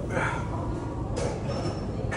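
Background noise of a busy gym: a steady low rumble, with a brief higher-pitched noise just after the start and another about a second in.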